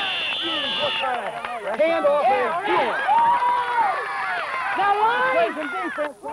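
Many overlapping voices of sideline spectators yelling and cheering at a youth football game, with a steady, high whistle blast held through the first second, as a referee's whistle ending a play.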